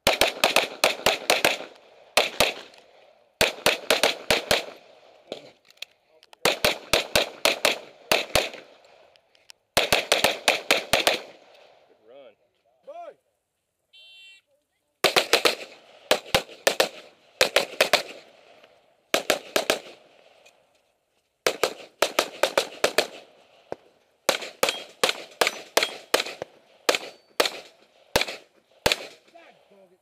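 Rapid-fire pistol shots from a custom Open-division race gun: about a dozen quick strings of several shots each, fired in fast succession, separated by short pauses. There is a break of about three seconds in the middle.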